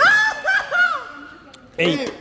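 A man's high-pitched laugh, a few quick pulses over about a second.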